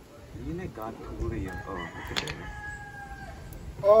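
A rooster crowing once, its final note held steady for nearly two seconds, with a short loud exclamation of 'Oh' at the very end.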